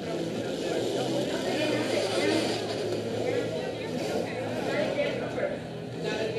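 Indistinct voices and crowd chatter over a steady rolling rumble of quad roller skates on a wooden rink floor.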